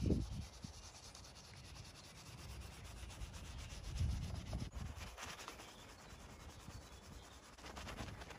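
Soft detailing brush scrubbing through soapy foam on car paint and window trim, a quiet bristly rubbing. A few low rumbles come near the start and about four seconds in.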